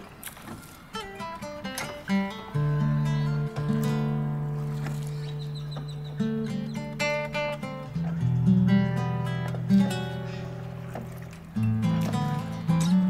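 Instrumental passage of acoustic trova song: plucked acoustic guitar over long held bass notes that shift in pitch a few times.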